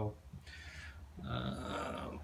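A man's voice: a word trailing off, a short breathy hiss, then a drawn-out voiced hesitation sound before he speaks again.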